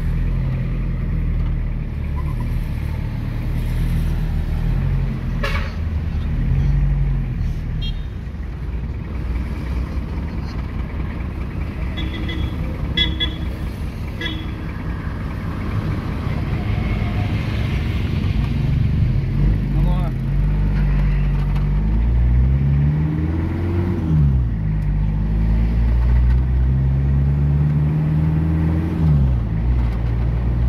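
Vehicle engine heard from inside the cab while driving, its note climbing twice in the second half as it accelerates, each climb ending in a sudden drop at a gear change. A few short horn toots sound around the middle.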